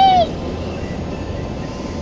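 A toddler's short, high, falling whimper right at the start, then the steady rushing noise of an automatic car wash working over the car, heard from inside the cabin.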